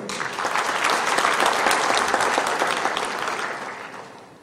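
Audience applauding in a large hall, the clapping building over the first second and dying away toward the end.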